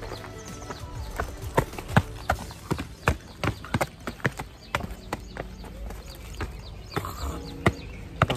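Footsteps on dry, stony ground: a run of sharp, irregular clicks, about two or three a second, under faint background music.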